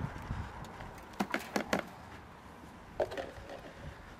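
A few sharp light knocks and clicks in quick succession a little over a second in, and one more about three seconds in: plastic gardening pot and container being handled over a wheelbarrow of compost.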